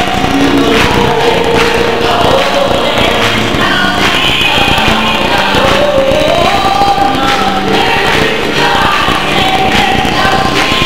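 Gospel choir singing with a woman soloist, over instrumental accompaniment with a steady beat.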